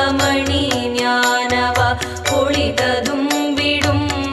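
Tamil Hindu devotional music in a Carnatic style: a held, pitched melody line over a steady percussion beat.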